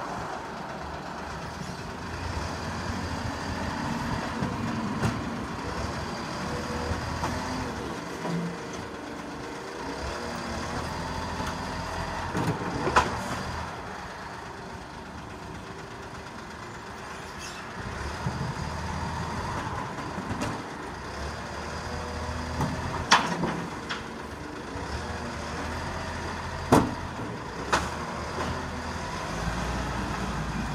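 Side-loading garbage truck's diesel engine running, swelling in spells as it works the lifting arm. Sharp metallic bangs of wheelie bins being tipped and knocked come at about 13 seconds in, and again near 23 and 27 seconds.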